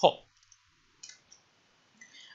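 A few faint, short clicks of computer keyboard keys being typed during a pause in speech.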